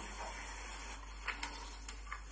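Faint room noise with a low steady hum, and a few faint clicks in the second half.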